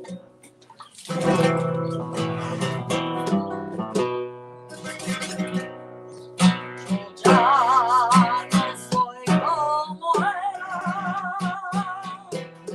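Flamenco on a classical guitar: strummed chords and plucked notes coming in strongly about a second in. From about seven seconds in, a woman sings held notes with a wide vibrato over the guitar.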